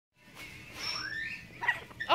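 Blue-throated macaw calling: a soft rising whistle-like call about a second in, then a short, sharp squawk near the end.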